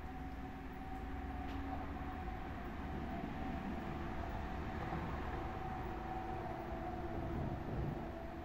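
A steady, distant low rumble with a faint constant hum, swelling a little in the middle.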